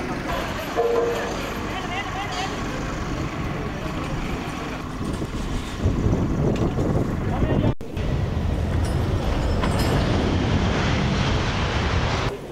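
Steady engine noise with people talking over it. A short high beep sounds about a second in. The noise grows louder from about six seconds in and drops out for an instant near eight seconds.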